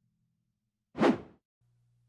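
A single short whoosh sound effect about a second in, the kind used to mark a transition between slides.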